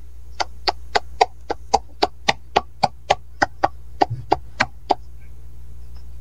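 One pair of hands clapping at a steady pace, about three to four claps a second, stopping about five seconds in, over a steady low hum.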